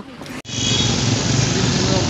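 Steady outdoor street noise with a low engine hum from traffic. It starts abruptly about half a second in.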